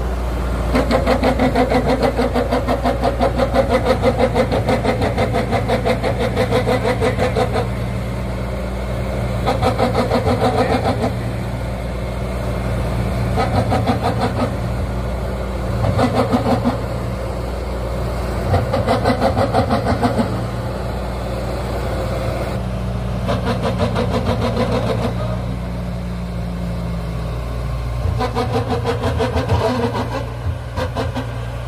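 Diesel engine of a single-drum road roller running steadily as it rolls across grass turf. A rapid rattling pulse comes and goes in stretches of a few seconds, several times over. The engine note dips slightly near the end.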